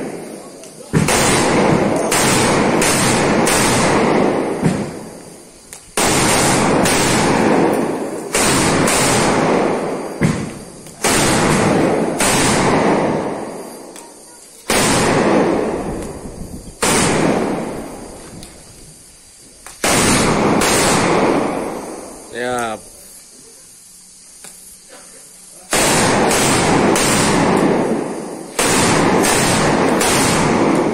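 A long string of mercon firecrackers hung from a bamboo pole going off in a run of loud bangs, about a dozen heavy blasts each trailing off over a second or two, with a lull a little past two-thirds of the way through.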